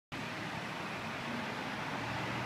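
Steady outdoor background noise with a faint low hum and no distinct events.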